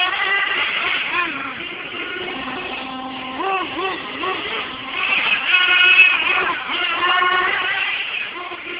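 1/8-scale radio-controlled late model race cars running laps on a dirt oval, their small engines whining higher and lower as they speed up down the straights and slow for the turns, loudest as the cars pass by.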